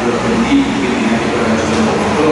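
Speech: a voice talking in a large meeting room, over a steady noisy background.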